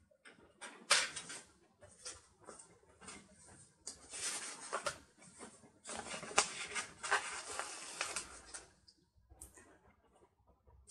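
Paper planner sticker sheets being handled and slid over a paper page: papery rustling and scraping in irregular bursts, with a sharp tap about a second in.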